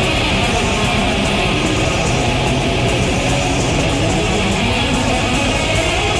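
Death/thrash metal band playing an instrumental passage: distorted electric guitar riffing with bass and drums, dense and loud throughout. It is a lo-fi 1985 cassette demo recording.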